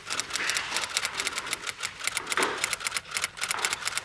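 Fast typing on a laptop keyboard: a quick, uneven stream of plastic key clicks, several a second.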